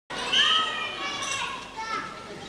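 High-pitched children's voices shouting and calling out, starting suddenly just after the start and loudest in the first half second.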